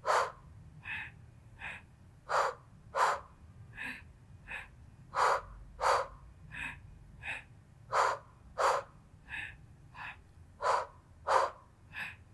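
A woman breathing hard and sharply while doing Pilates side kicks: short, forceful breaths about every two-thirds of a second, in alternating pairs of stronger and softer ones.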